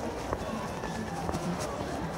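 Steady din of a pachislot parlour: machine sounds and music blurred into one constant noise, with indistinct voices in it and scattered small clicks.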